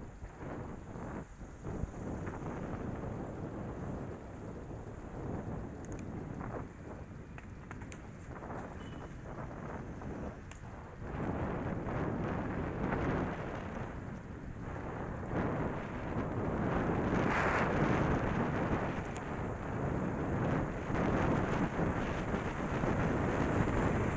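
Wind buffeting the microphone of a camera on a moving bicycle, a continuous rumbling rush that rises and falls and grows louder in the second half, with road traffic mixed in.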